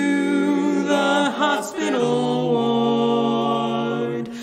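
A barbershop quartet singing a cappella in close harmony. The chords move in the first half, then settle into one long held chord for the second half.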